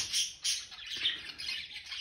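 Caged pet budgerigars chirping: a soft, busy chatter of high tweets.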